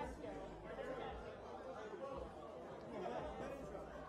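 Indistinct chatter of many people talking over one another in a large hall, no single voice standing out.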